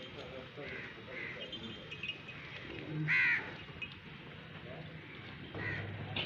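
A single loud animal call about three seconds in, over the low background noise of a crowded goat pen, with a smaller sound near the end.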